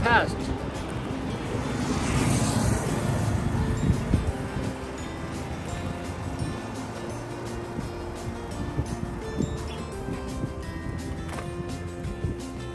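Background music with steady held tones throughout. About two to four seconds in, a louder rushing swell rises over it, like a vehicle going by.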